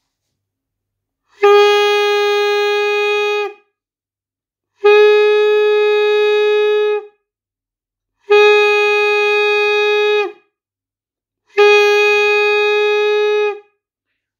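Saxophone mouthpiece on its neck alone, without the body, blown in four long, steady notes of the same pitch, each about two seconds with short gaps between.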